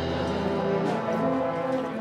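Wind band playing a processional march, brass holding long sustained notes. The low bass thins out for most of the moment and comes back in at the end.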